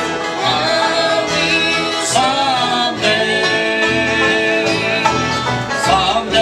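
A live bluegrass band playing: strummed acoustic guitars, fiddle, mandolin and upright bass.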